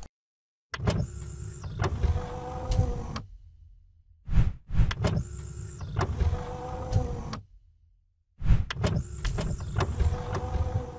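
Sound effects of an animated logo sequence: mechanical sliding and whirring sounds with sharp clicks, in three similar passes of about three seconds, each separated by a brief silence.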